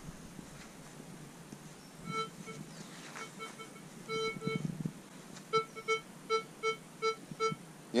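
Tarsacci MDT 8000 metal detector in all-metal mode giving short beeps of one steady pitch as its coil sweeps over a hammered silver coin hidden under a block of wood and a lump of coke: the detector is picking up the coin through the coke. The beeps come irregularly from about two seconds in, then about three a second near the end.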